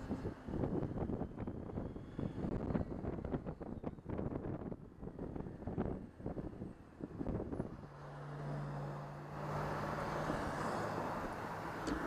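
Motorcycle riding with wind buffeting the microphone in ragged gusts; about eight seconds in a steady low engine drone comes through, joined by even wind and road noise as the bike reaches cruising speed.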